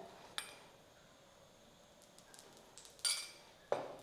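A few faint clinks of kitchen utensils: a small click about half a second in and a brief, sharper clink or scrape about three seconds in, with quiet between.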